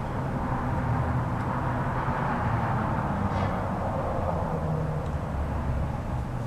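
Steady outdoor background noise: a low rumble and hiss with no distinct events.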